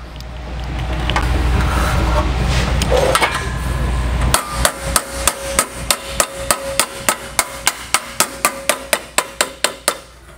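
Small body hammer tapping lightly and rapidly on the steel flange of a fender flare held over a metal finger in a bench vise, about four even strikes a second with a faint metallic ring between them, tipping the edge over a little at a time. The taps start about four seconds in, after a low rumble and handling noise.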